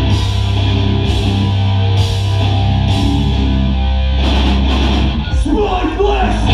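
Hardcore band playing live through a club PA: distorted guitars and bass holding low sustained notes under drums with heavy, regular cymbal hits. The riff changes about four seconds in.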